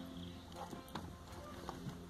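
A few faint light clicks as a new gear knob is pressed down onto a car's manual gear lever, over a low steady hum.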